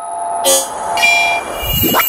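Electronic logo sting: a chord of held synthesized tones, joined by higher tones about a second in, with a rising whoosh near the end.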